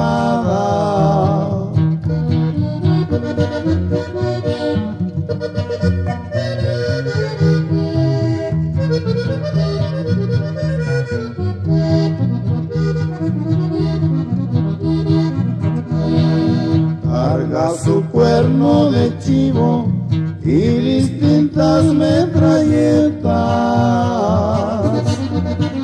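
Norteño music in an instrumental break of a corrido: an accordion plays the melody over a steady bass line that moves in a regular rhythm.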